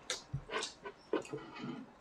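Quiet eating sounds at the table: chewing and breathing, with a few light clicks of chopsticks against crockery.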